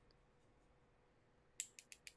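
Near silence, then near the end a quick, even run of light clicks, about seven a second.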